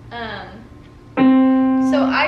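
Donner DEP-20 digital piano sounding a single note near middle C. It starts sharply a little past a second in and holds steady without dying away, kept ringing by the sustain pedal.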